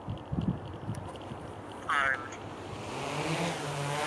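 Yuneec H520 hexacopter's six electric motors and propellers spinning up for take-off: a short high chirp about halfway through, then a whirring hiss that builds steadily as it lifts off the pad.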